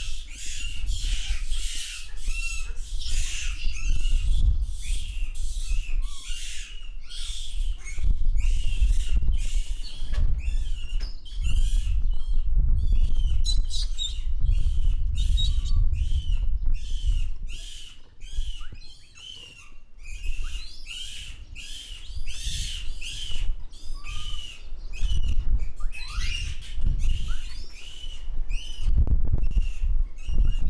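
A dense run of short, high-pitched chirping calls repeating about two or three times a second, over a low rumble.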